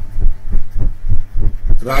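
Irregular low thumps and rumble on the microphone, about four or five a second, under faint speech.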